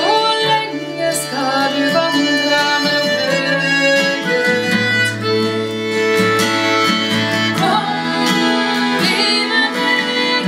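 Diatonic button accordion playing a Norwegian folk tune over a strummed acoustic guitar.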